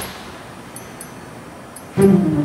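The background music breaks off with a sharp click at the start, leaving a steady, faint hiss with a few tiny high ticks.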